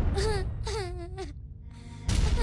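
A young girl crying: two wailing sobs in the first second and a half, over soft background music.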